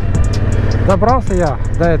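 Honda CRF1000L Africa Twin parallel-twin engine running while riding along a road, a steady low rumble mixed with wind noise on the helmet or bike-mounted microphone.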